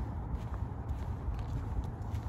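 Footsteps on asphalt, with a few faint clicks over a steady low rumble.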